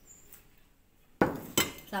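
A plate clattering against dishes on a table about a second in, followed by a second sharp clink.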